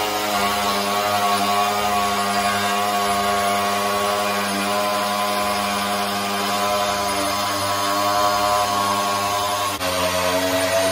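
Angle grinder fitted with a sanding disc, running steadily under load as it sands the edge of a round wooden tabletop to give it a distressed, worn look. Its motor gives a steady whine with a slight waver.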